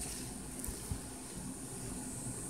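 Quiet, steady room hiss with a couple of faint small clicks a little over half a second in and about a second in.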